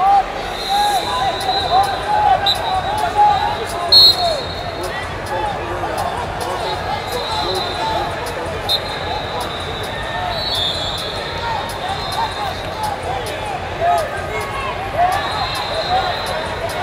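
Wrestling-shoe soles squeaking on the mats, many short squeaks a second, with sharp slaps and knocks, over the hubbub of voices in a large hall. High whistle blasts sound now and then, a few lasting a second or two.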